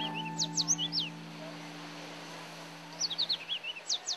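Yellow warbler singing: two quick phrases of sharp, high, down-slurred notes, one right at the start and one about three seconds in. Under the first phrase a held guitar chord from the background music fades out.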